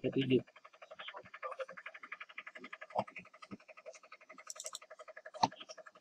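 A faint steady buzzing drone, with a sharp click about halfway through as an RJ45 Ethernet plug latches into a port of the gigabit switch and the link comes up. Another short click follows near the end.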